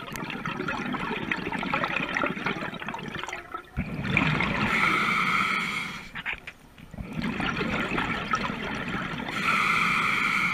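Scuba diver breathing through a regulator underwater: hissing and gurgling of air and exhaled bubbles, in two breaths with a short lull between them about six and a half seconds in.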